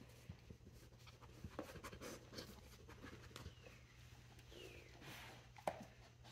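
Near silence with faint, scattered rustles and scrapes of a dog nosing at cardboard tissue boxes and towel-wrapped toilet-paper rolls on carpet.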